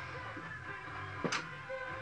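Faint background music over a low steady hum, with a single sharp click a little over a second in as makeup items are handled.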